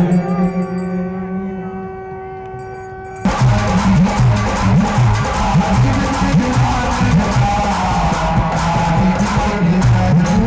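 Devotional music of a Ganga aarti: a long held note fades away over about three seconds, then gives way abruptly to loud group singing with rhythmic percussion.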